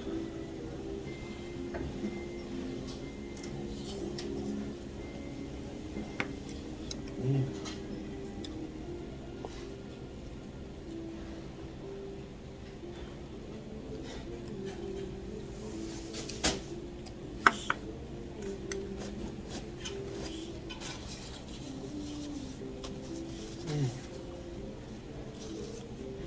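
Chopsticks and bowls clinking and tapping as someone eats, with a few sharp clinks about two-thirds of the way through. Soft background music plays under it.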